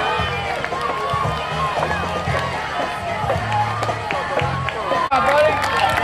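Spectators shouting and cheering encouragement to passing cross-country runners, many voices overlapping, with a brief drop-out about five seconds in.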